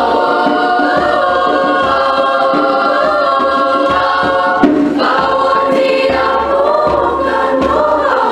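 Mixed-voice youth choir singing unaccompanied in several parts, with sustained chords that shift slowly in pitch and a short break and fresh attack a little past halfway.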